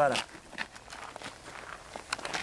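Footsteps: a run of short, irregular steps.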